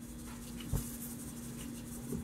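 Salt being sprinkled into a pot of water, a faint granular rustle, with one soft knock a little under a second in.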